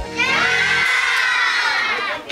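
A classroom of children shouting together in one long, drawn-out call, a goodbye called out in chorus.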